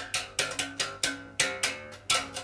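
Electric bass, a Richwood (SX) 70s Jazz Bass copy with a solid maple body, played slap style through a Laney RB4 bass amp: a quick run of sharp slapped notes, about seven or eight in two seconds, each with a bright percussive attack over the low note.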